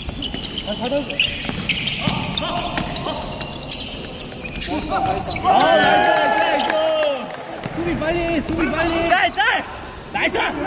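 Basketball being dribbled on a hardwood gym floor, with sneakers squeaking on the boards again and again from about five seconds in.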